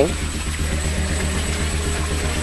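Steady low rumble with an even hiss of outdoor background noise, pulsing slightly.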